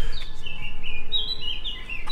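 A songbird singing outdoors: a run of short, high, clear whistled notes that step up and down in pitch.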